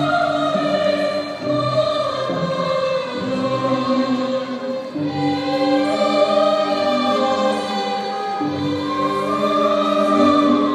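Choral music: voices holding long notes together, the chords changing every second or two.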